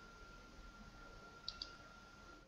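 Computer mouse button double-clicked once, about one and a half seconds in, two quick clicks over near-silent room tone with a faint steady thin whine.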